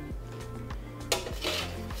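Metal tongs clinking against an air fryer basket and plate as fries are lifted out, with a few sharp clinks about a second in. Background music plays throughout.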